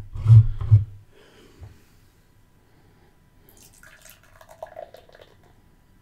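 A few low thumps from a beer can being handled close to the microphone in the first second, with a single knock shortly after. Later comes a faint, uneven trickle of beer being poured from the can into a glass.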